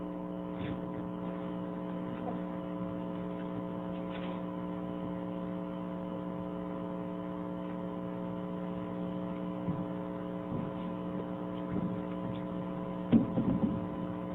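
Steady electrical mains hum: several steady tones, the lowest and strongest a low buzz, held unchanged, with a few faint scattered sounds near the end.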